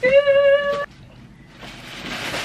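A drawn-out, sung "yeah" held on one pitch for nearly a second. About a second and a half in, plastic-wrapped clothing packages start rustling as they are pulled out of a cardboard shipping box.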